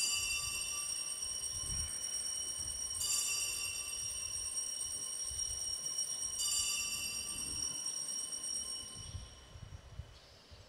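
Altar bells rung three times, each ring a bright cluster of high tones that rings on for a few seconds. They mark the elevation of the chalice just after the words of consecration.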